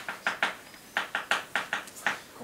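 Chalk writing on a blackboard: a quick run of short, sharp taps and scratches as letters are written, with a brief pause about halfway.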